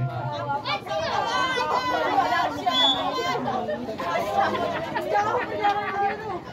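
Spectators' voices talking and calling out over one another in lively chatter, from about a second in onward.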